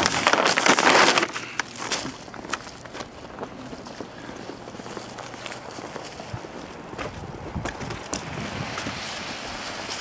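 Handling noise from fitting an AutoSock textile snow sock over a car tyre. A loud rustle for about the first second, then quieter rustling with scattered light clicks and knocks.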